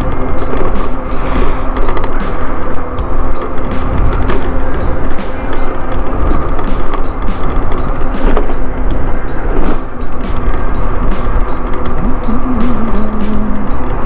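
Steady rumble of wind and road noise from a scooter riding along a paved road, under background music.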